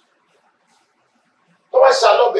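A pause with only faint room tone, then about 1.7 s in a man's voice comes in loudly and sharply through a handheld microphone.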